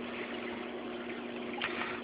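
Steady low hum with a hiss of moving water from a reef aquarium's pumps and water circulation.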